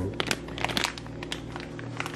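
Plastic bag of candy-melt wafers crinkling as it is tipped and shaken over a saucepan, with many quick irregular clicks of the wafers sliding out.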